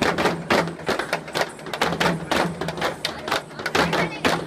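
Several frame drums beaten with sticks in a fast, even rhythm, about six strokes a second, with a low ring under the strokes.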